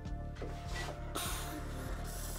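Soft background music, with a faint steady hiss starting about a second in as a TOTO WASHLET+ bidet seat, just powered on, starts up, opening its lid and beginning its pre-mist.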